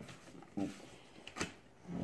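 A single sharp tap on a wooden tabletop about a second and a half in, as a playing card is put down, in an otherwise quiet room with a brief faint voice just before.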